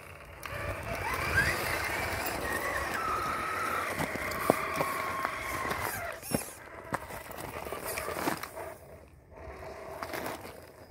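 Redcat Gen 8 RC crawler's electric motor and gearbox whining under load as it drives over loose gravel, with stones crunching and clicking under the tyres. The whine rises in pitch about a second in and drops away after about six seconds, leaving mostly gravel crunch.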